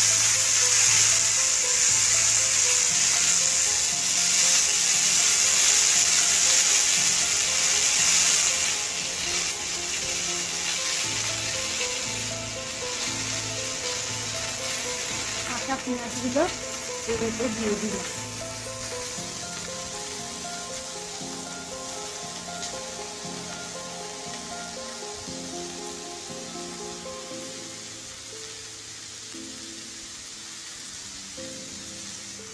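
Sliced onions sizzling in hot oil in an aluminium kadai just after they go in. The sizzle is loud and hissing for the first eight seconds or so, then settles into a quieter, steady frying hiss.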